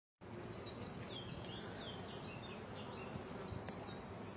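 Honey bees buzzing around a comb frame lifted from an open hive, a steady low hum of many bees. A run of short, high chirps sounds over it in the first three seconds.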